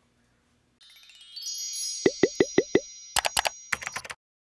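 End-card sound effects: a bright, chiming shimmer comes in about a second in, then a quick run of five plops at about five a second, then two short clusters of sharp clicks near the end.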